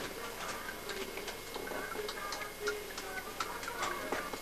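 A series of light, sharp clicks at uneven spacing, about three a second.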